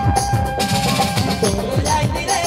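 Live Nagpuri folk-music band playing: a dholak barrel drum and a Roland electronic drum pad struck with sticks keep a fast rhythm, with low drum strokes that drop in pitch, under a held melody note.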